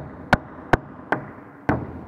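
Rubber mallet striking plastic wall plugs to drive them flush into drilled holes in a wooden wall: four sharp knocks, a little under half a second apart.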